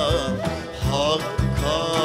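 Live Turkish Sufi music: a male singer with an ensemble of oud, cello, frame drum and cajon, a steady drum beat under the melody and a rising vocal glide about a second in.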